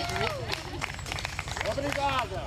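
Light, scattered audience clapping with voices calling out, which die down as talking resumes near the end.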